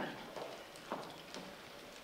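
Heeled shoes walking away across a stage floor: about four hard footsteps roughly half a second apart, getting fainter.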